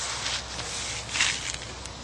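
Footsteps and rustling, with a short scuffing noise about a second in, over a steady low hum.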